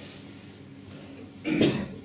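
A quiet pause, then about one and a half seconds in a single short cough or throat-clearing from a man, loud and close to his headset microphone.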